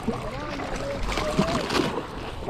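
Water splashing and sloshing as a large hooked salmon thrashes at the surface on the end of the line, a steady rush without sharp impacts.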